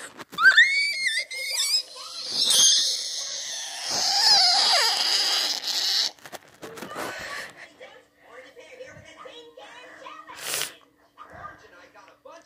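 A child's shrill, high-pitched scream, its pitch sliding up and down, lasting about six seconds and then stopping. Quieter talk follows, with a short burst of noise near the end.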